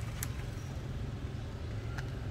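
One short, sharp plastic click about a quarter second in, from the back cover's clips letting go as the OPPO A3S's back cover is prised off by hand. A steady low rumble of background noise runs underneath.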